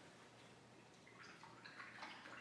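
Near silence, then from about a second in the faint, broken swishing and dripping of a paintbrush being rinsed in a bowl of water.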